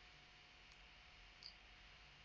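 Near silence: faint steady hiss of room tone, with one small, short click about one and a half seconds in.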